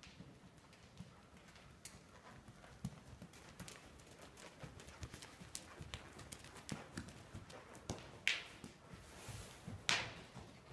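Hoofbeats of a palomino horse ridden around an arena with dirt footing, an irregular run of soft knocks that grows louder as the horse passes close. Two short, loud rushes of noise come near the end, about a second and a half apart.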